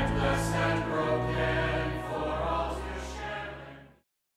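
Choral music, voices singing over sustained low notes, fading out near the end.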